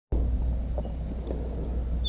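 Steady low rumble of outdoor background noise, with a couple of faint soft ticks.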